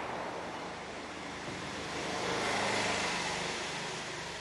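Road traffic noise from passing vehicles, a steady rush that swells a little past the middle.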